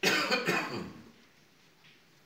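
A person coughing: a short run of two or three coughs in the first second.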